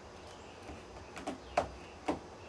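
Hands pressing and smoothing duct tape down over a small plastic transmitter box on a car's metal hood: a few short taps and rubs, the loudest about a second and a half in.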